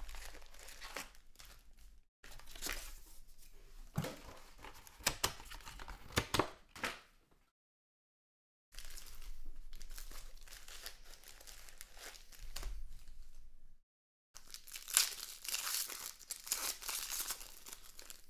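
Foil trading-card packs crinkling as they are handled and stacked, with a few sharp clicks, then a foil pack being torn open near the end, the loudest part. The sound cuts out completely twice for a moment.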